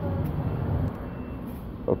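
Steady low background rumble, easing a little about a second in.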